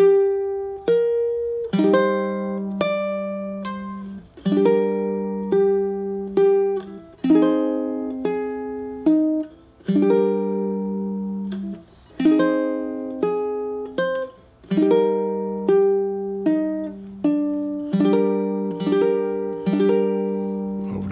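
Ukulele playing a slow chord melody in C minor: single melody notes plucked between chords struck with a single strum. Each note or chord rings and fades before the next one.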